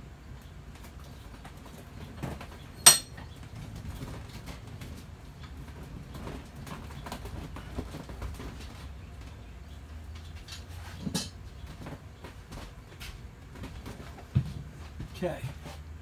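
Scattered clicks and knocks of objects being handled, the loudest a sharp click about three seconds in and another about eleven seconds in, over a steady low hum. A brief voice-like sound comes near the end.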